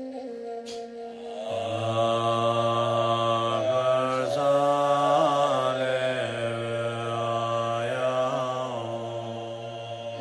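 A man's voice chanting a mantra: a quieter, higher tone at first, then one long low held note from about a second and a half in, with a few small shifts in pitch.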